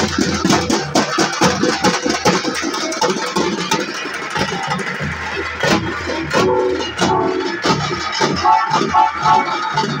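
Loud street-procession drumming on large double-headed drums, a fast, dense stream of beats, mixed with amplified music from loudspeaker horns. A sustained melody comes in near the end.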